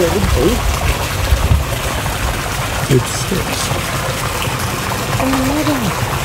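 Water pouring from spouts in a stone wall and splashing steadily into a swimming pool.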